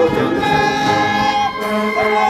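Military brass band playing long held chords, the notes changing about a second and a half in.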